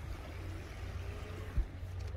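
Low steady wind rumble on the microphone, with one dull thump about one and a half seconds in.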